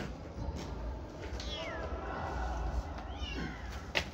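A young kitten mewing twice, about a second and a half apart: two high, thin calls that each fall in pitch.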